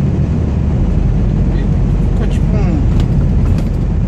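Steady low drone of a Scania R440 truck's diesel engine and road noise, heard from inside the cab while cruising.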